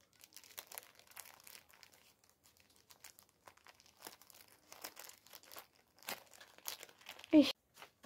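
Clear plastic zip-lock bag crinkling faintly and irregularly as it is handled. A short, louder burst of a woman's voice comes near the end.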